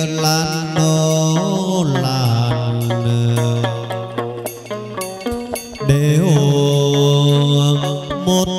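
Hát văn (chầu văn) ritual music: a singer draws out long, wavering held notes over the moon lute. About five seconds in the voice breaks briefly, leaving sharp percussion clicks before the singing resumes.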